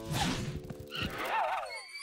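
Cartoon sound effects: a quick whoosh of characters zipping away, then a short wavering, high-pitched sound about a second and a half in.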